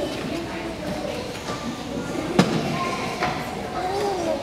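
Chatter of voices, children's among them, echoing in a large hall, with a sharp knock a little past halfway.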